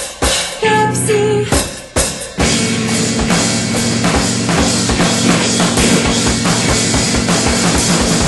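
Instrumental avant-rock passage on drum kit and electric guitar: a few short stop-start stabs, then busy, rapid drumming over a held guitar chord from about two and a half seconds in.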